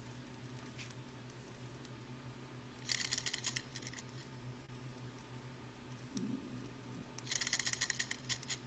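Two short bursts of light mechanical clattering, about three seconds in and again near the end, as the small Stirling engine's flywheel is spun by hand and its pistons and linkage rattle; the engine is not yet running on its own. A faint steady hum lies underneath.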